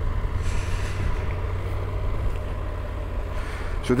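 Motorcycle engine running steadily while riding, a low, even drone. A short hiss of wind noise comes in about half a second in.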